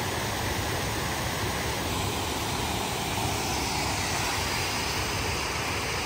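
Waterfall in heavy flow after recent rain: a steady, even rush of falling water, really powerful.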